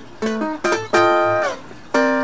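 Acoustic guitar improvising a blues lick: a few quick single plucked notes, then a chord struck about a second in that slides down in pitch as it rings out.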